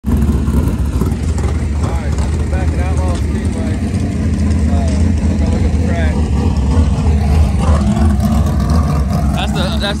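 Dirt-track race car engine running in the pits, a steady loud low rumble, with people's voices faint above it.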